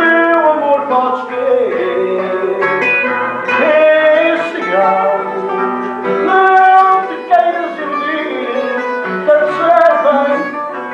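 A man singing fado, accompanied by a Portuguese guitar and a classical guitar (viola) playing plucked notes and chords.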